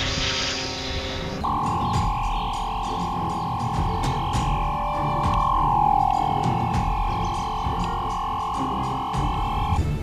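Electronic sci-fi sound effect for a transfer device: a shimmering rush in the first second, then a steady electronic tone that holds for about eight seconds. The tone bends down slightly midway and cuts off just before the end.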